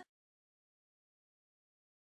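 Total silence: the soundtrack drops to nothing.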